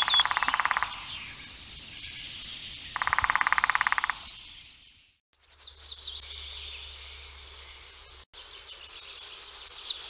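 Woodland birdsong. Twice there is a fast, evenly pulsed rattling trill lasting about a second, and from about five seconds in a bird sings rapid series of high, steeply falling whistled notes. The sound drops out abruptly twice.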